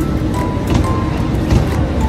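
Background music with short held melody notes over a heavy low end.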